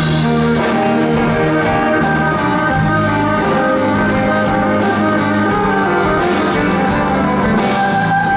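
Live rock band playing: a violin carrying held notes over electric bass and drums, with a steady beat.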